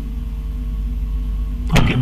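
Steady low hum with a few faint steady tones over a telephone call line, with no voice on it until a voice comes in near the end.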